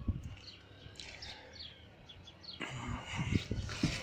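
Faint bird chirps in the background, then rustling and a few soft knocks in the second half as someone climbs into a car's driver seat.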